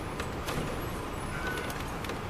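Inside a 2002 MCI D4000 coach on the move: the steady drone of its Detroit Diesel Series 60 engine and road noise, with scattered clicks of interior rattles. There is a brief high squeak about one and a half seconds in.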